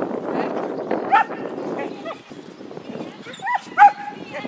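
A dog barking in short, sharp yips: once about a second in, then twice in quick succession near the end, the last the loudest.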